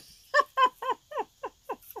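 A woman laughing: a run of short 'ha' bursts, each dropping in pitch, about three or four a second.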